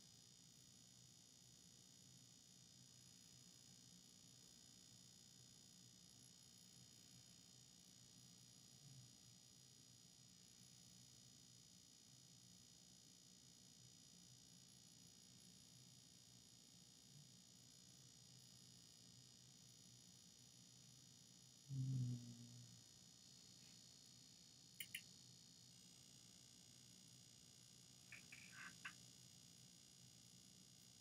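Near silence: faint steady room tone and hiss, broken by one brief low sound a little past the middle and a few faint clicks near the end.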